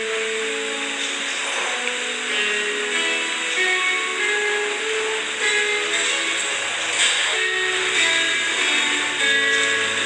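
Instrumental music playing a melody of held notes, each lasting about half a second to a second. It is the introduction to a sung responsorial psalm, before the voice comes in.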